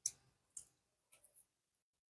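Nearly silent, with a few faint brief clicks from a silicone mold being flexed in the hands to release a cured resin casting.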